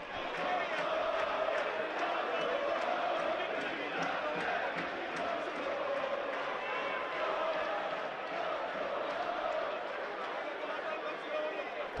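Ice hockey arena crowd: a steady din of many voices from the stands.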